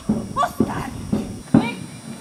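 Witches' voices in a stage performance: a quick run of short vocal cries, about three a second, each bending up and down in pitch.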